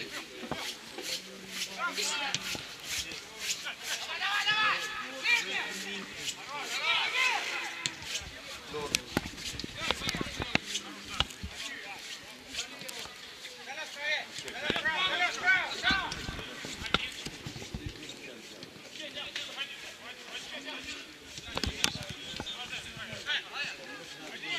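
Footballers shouting and calling to each other on the pitch during open play, in several bouts, with the sharp thud of the ball being kicked now and then.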